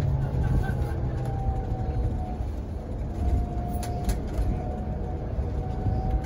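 Inside a moving electric trolleybus: a steady low rumble of the ride, with a faint motor whine that slides slowly down in pitch and then holds. A few light rattles and clicks.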